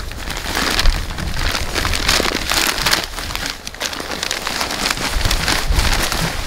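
Potting mix pouring out of its plastic bag into a plastic wheelbarrow tub: a continuous pattering hiss of falling soil, with the bag rustling as it is handled.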